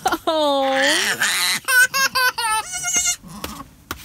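A young child laughing in a run of short, high giggles, with a baby goat bleating in quavering calls in between.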